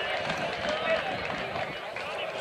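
Several voices of football players and spectators talking and calling out at once, with no words clear.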